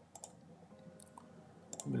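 A few single computer mouse clicks, spaced apart, over faint background hiss.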